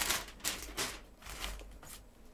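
Wig hair rustling and scraping close to the microphone as the wig is pulled on and adjusted by hand, in about five short scratchy bursts.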